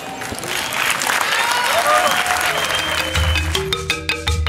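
Audience applause with a few voices calling out at the end of a poetry reading, then music with a low pulsing bass comes in about three seconds in.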